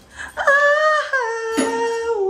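A person's voice drawing out one long wailed, sung note that steps down in pitch twice, with a sharp click partway through.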